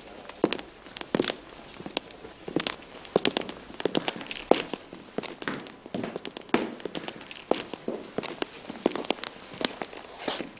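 Footsteps of several people walking on a hard floor: a steady, irregular run of sharp shoe taps, about two to three a second, some overlapping.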